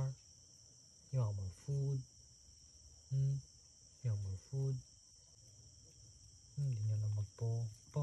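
Crickets chirping steadily as a night-time chorus, under a man's short murmured vocal sounds, about eight brief low 'mm'-like utterances in three clusters.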